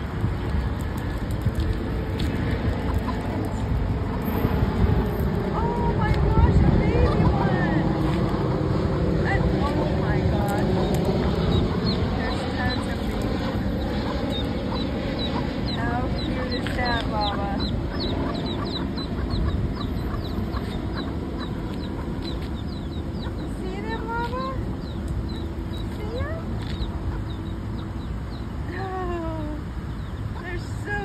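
Baby chicks peeping in many short, high chirps, busiest in the middle stretch, over a steady low rumble of road traffic that swells briefly early on.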